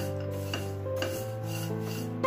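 Background music of held notes changing every fraction of a second, over the dry scraping rustle of a silicone spatula stirring flattened rice flakes and peanuts in a stainless steel pan.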